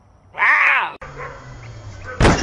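A cougar (mountain lion) gives one short, loud call that rises and then falls in pitch, like a 'wow'. A sudden cut about a second in is followed by a faint low hum.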